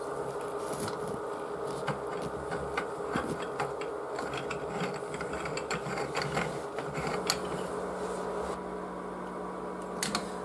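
Brass pipe union nuts and fittings of a backwash water filter being screwed on by hand and shifted into line: irregular small metallic clicks and ticks, with a faint steady hum underneath.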